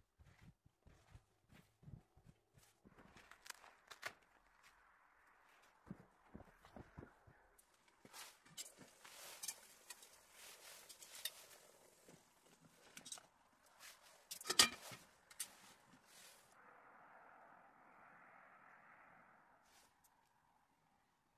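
Boots crunching slowly through deep snow, a few spaced steps in the first few seconds. Then a run of sharp clicks and rustling, loudest about fourteen and a half seconds in, and a soft steady hiss over the last few seconds.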